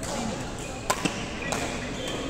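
Badminton rackets striking a shuttlecock: sharp clicks, two close together about a second in and a fainter one shortly after.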